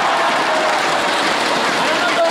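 Audience applauding in a large hall: a steady, dense clapping that holds at one level throughout.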